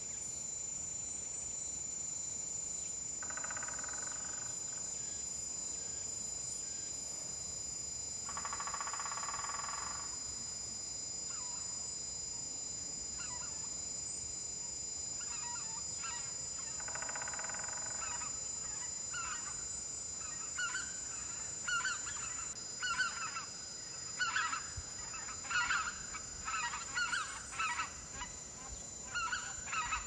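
Wild birds calling over a steady, high insect drone. Three drawn-out calls of about a second each come early and mid-way, then many short chirps that grow busier toward the end.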